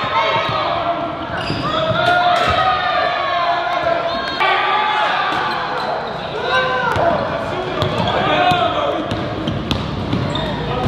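Live basketball game sound: a ball bouncing on a hardwood court amid players' and spectators' indistinct voices.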